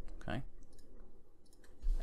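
Scattered light keystroke clicks on a computer keyboard as code is typed.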